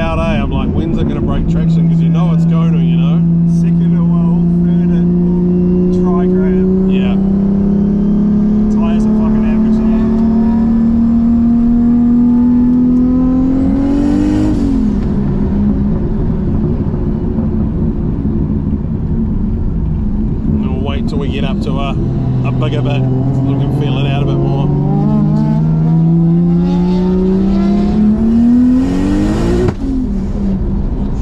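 Car engine heard from inside the cabin under hard acceleration: the engine note climbs steadily for about twelve seconds, drops away sharply about halfway through, then climbs again over the last eight seconds and falls off right at the end.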